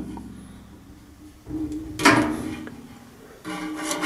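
Handling noise from a tape measure being shifted against a soldered copper conductor head, with one short knock about two seconds in, over a faint low hum.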